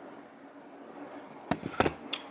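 A faint steady hum, then two or three sharp knocks close together near the end: handling noise as things are moved close to the camera.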